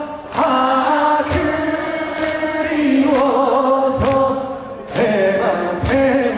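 Live music: many voices singing or chanting together in unison, with a steady beat of sharp strokes about once a second.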